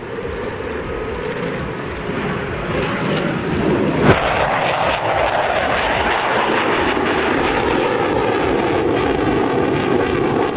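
F-15J fighter's twin jet engines: a loud roar that builds over the first few seconds and then holds, with one sharp crack about four seconds in.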